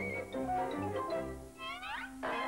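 Cartoon soundtrack music in short orchestral notes. In the last half second a cartoon cat gives a rising yowl.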